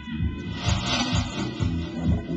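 Deep house record playing from vinyl on a turntable: a steady four-on-the-floor kick about twice a second under held synth chords. A cymbal-like wash of hiss swells up about half a second in and fades out over the next second.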